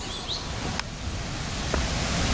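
Outdoor rural ambience: a few short bird chirps at the start, then a click at an edit about a second in, followed by a steady hiss and low rumble of wind on the microphone.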